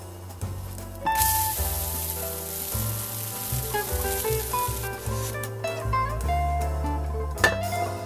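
A freshly flipped crêpe of beer batter sizzling in a hot frying pan: a sharp burst of frying hiss starts about a second in, as the raw side meets the pan, and dies away about four seconds later. Acoustic guitar music plays throughout.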